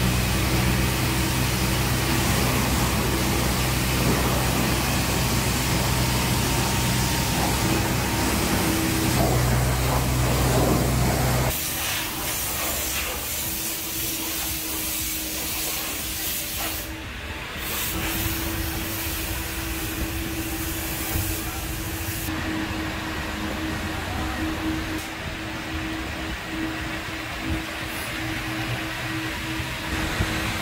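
Steady machine hum with a hiss of spray in a car-wash bay. About eleven seconds in it cuts suddenly to a quieter steady hum and hiss.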